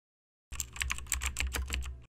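Computer keyboard typing: a rapid run of key clicks, about eight a second, starting about half a second in.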